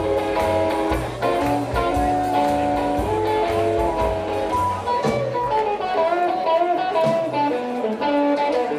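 Live rock 'n' roll band playing: electric guitar lines with held and bending notes over a steady drum beat.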